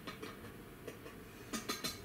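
Faint background music under a few light clicks and scrapes of a spatula and chopsticks in a frying pan, bunched together near the end.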